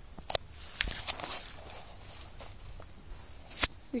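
Footsteps through dry leaf litter and undergrowth, with a few sharp crackles of leaves and twigs underfoot and plants brushing past.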